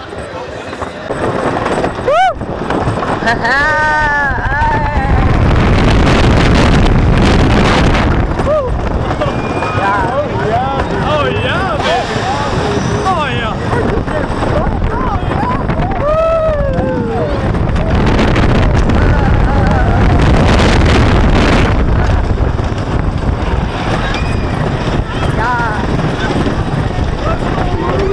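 Wooden roller coaster train rattling and rumbling along its track, with wind on the microphone, the noise building over the first few seconds and then staying loud. Riders yell and scream several times over it.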